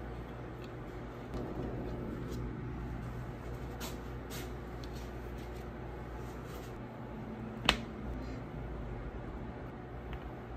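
Steady low background hum with a few faint clicks, and one sharp click about three-quarters of the way through, the loudest sound.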